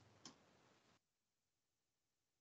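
Near silence, with one faint short click about a quarter second in.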